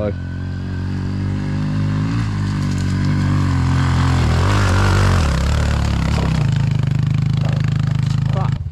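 Honda CRF110 dirt bike's small four-stroke single-cylinder engine working under load on a rocky hill climb. It grows louder as the bike nears, is loudest about five seconds in, then holds a steady drone as the bike climbs away.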